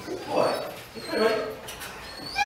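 A dog whining and yipping in two short vocal bursts, about half a second in and again about a second in, as it is released from a stay.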